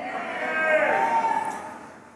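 A faint person's voice calling out, higher-pitched than the preacher's: one drawn-out call that bends in pitch and then fades away.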